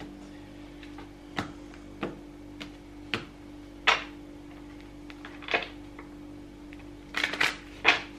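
Tarot cards being handled and shuffled on a tiled countertop: scattered sharp clicks and taps, then a quicker flurry of clicks near the end, over a steady low hum.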